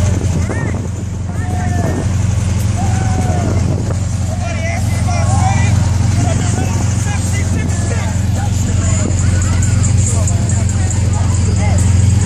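Low, steady engine hum of parade vehicles driving slowly past, with onlookers' voices chatting and calling out throughout.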